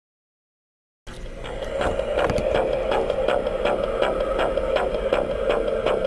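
Jason Voorhees musical pathway stakes, set off by the box's try-me button, playing their tune through a small built-in speaker: a steady tone with a regular beat about three times a second. It starts suddenly about a second in.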